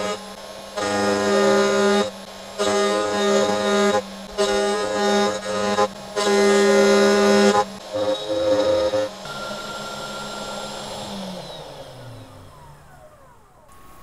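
AnoleX 3030-Evo Pro desktop CNC router at work on aluminium: the spindle runs with a steady hum while the stepper motors sing in pitched, musical tones that start and stop every second or so as the axes move. About two-thirds of the way through the moves end and the spindle winds down in falling pitch.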